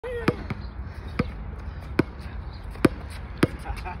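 A basketball dribbled on an outdoor hard court: five sharp bounces, a little under a second apart, with the last coming quicker.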